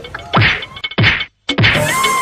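Slapstick whack sound effects: three sharp hits, each with a quick falling pitch, dubbed onto a wooden stick being brought down on a man's bandaged head. A steady high beep-like tone starts near the end.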